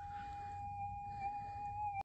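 Minelab GPX 6000 gold detector's threshold hum: one steady tone that wavers slightly near the end.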